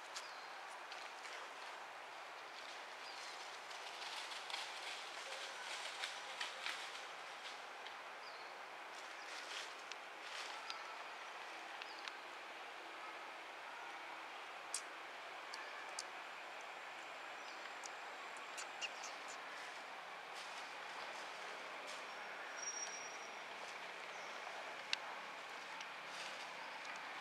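Steady, faint outdoor background hiss with scattered small clicks and crackles, most of them a few seconds in and again around ten seconds in. A brief high thin whistle comes near the end.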